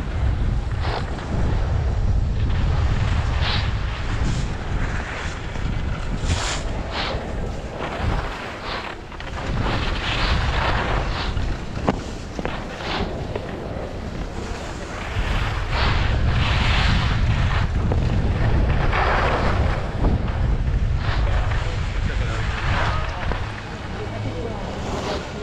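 Wind buffeting the microphone while skiing downhill, with the hiss and scrape of skis on snow swelling and fading every second or two as the skier turns.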